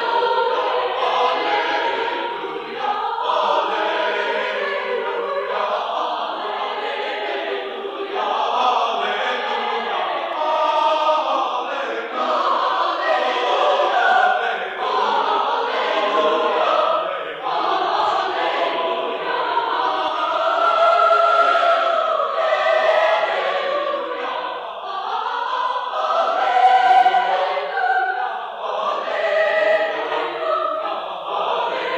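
A choir singing a song of praise, sustained sung lines moving from chord to chord. It is heard through an old cassette transfer, so it sounds dull and lacks the high end.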